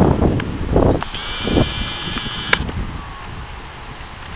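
Wind buffeting the camera microphone in gusts, loudest in the first second and a half. A faint, high, steady tone sounds for about a second and a half in the middle, ending with a short sharp click.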